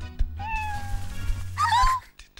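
Children's channel ident music with a steady bass line, overlaid by cartoon-character vocal cries: one long, gently falling call about half a second in and a short rising-and-falling call near the end.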